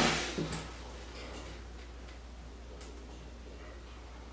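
Low, steady room hum with a few faint, short ticks. It follows a louder sound that trails off in the first half second.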